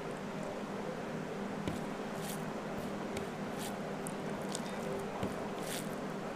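Fingers mixing cooked rice with curry gravy: faint wet squishes and small clicks every half second or so, over a steady low background hum.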